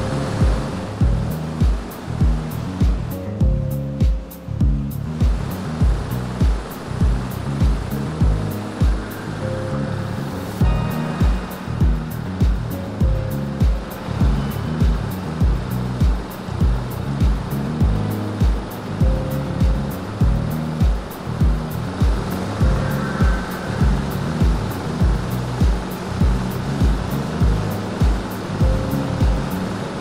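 Background music with a steady beat and a moving bass line, over a steady wash of noise.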